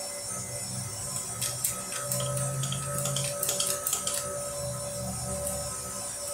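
Throttle linkage of a Motorcraft 4300 four-barrel carburetor worked by hand, giving a scattered run of small clicks and snaps in the middle seconds, to test the accelerator pump, which is not pumping.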